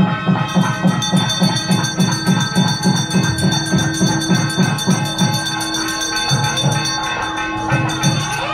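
Temple aarti music: a drum beating a fast, very even rhythm of about three to four strokes a second, with a metal bell ringing steadily over it.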